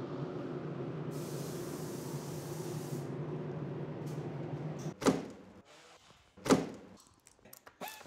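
Steady hum of spray painting with the hiss of an air-fed spray gun for a couple of seconds, then two sudden loud thuds about five and six and a half seconds in, followed by a few light clicks.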